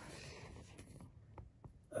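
Faint room tone with a few soft ticks in the second half, dropping to near silence just before the end.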